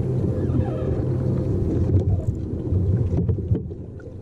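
Steady low rumble of wind and sea buffeting the camera's microphone on a kayak at sea, with a few sharp knocks near the end as a fishing rod is snatched from its holder.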